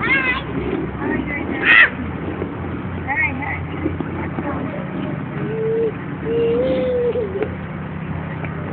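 Young children's high-pitched voices, short squeals and calls, over a steady low rumble of street traffic; in the second half a voice holds two long, level notes.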